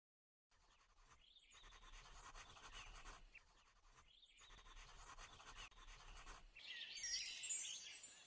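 Pencil scratching across paper, faintly, in two long strokes of about three and two seconds, followed near the end by a brief high shimmer of falling tones.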